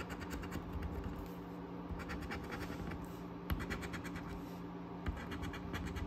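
Coin scraping the scratch-off coating of a paper lottery ticket, in quick runs of short strokes with brief pauses between them.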